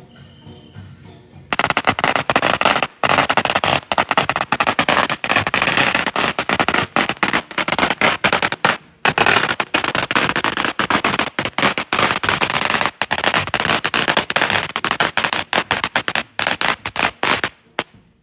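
A long string of firecrackers going off in rapid, continuous cracks. It starts abruptly about a second and a half in and stops just before the end.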